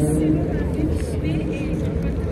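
A woman speaking over steady outdoor city noise, with a low rumble of street traffic underneath.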